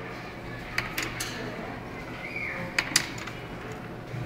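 Quiet classroom room tone with a few small, sharp clicks and knocks: two about a second in and a close pair near three seconds.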